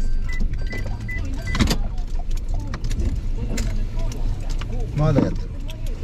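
A car's electronic beeper sounds short, high, evenly spaced beeps, about two and a half a second, which stop about a second and a half in with a sharp click. The car's low steady running rumble sounds inside the cabin throughout.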